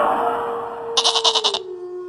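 A rushing magical whoosh effect, then about a second in a goat bleats once with a short, quavering call. A held steady tone runs underneath and drops a step in pitch as the bleat ends.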